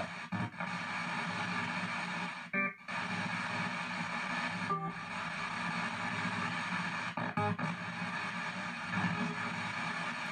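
P-SB7 ghost box (spirit box) radio sweeping through stations in reverse sweep: continuous choppy static with snatches of broadcast music, broken by a few brief dropouts.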